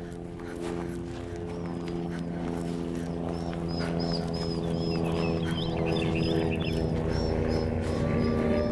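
Recorded electroacoustic soundscape: a sustained drone of several steady tones swells gradually louder. From about three seconds in it is joined by high chirps repeated a few times a second, with a fast low fluttering underneath.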